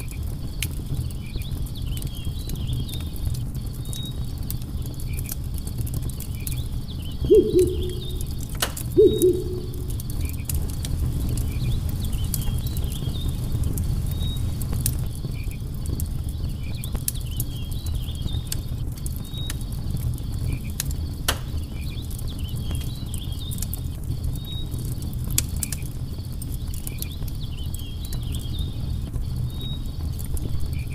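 Campfire crackling: a steady low rush from the flames with sharp pops now and then, over faint, repeated insect chirps. About seven seconds in, a bird gives two low hoots a little under two seconds apart, the loudest sounds here.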